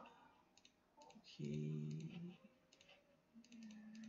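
Faint scattered clicks of a computer mouse and keyboard. Partway through there is a short hummed 'mm' from a man's voice.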